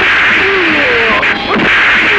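Dubbed fight-scene sound effects: a loud, sustained hissing whoosh with a sharp punch-like hit about one and a half seconds in.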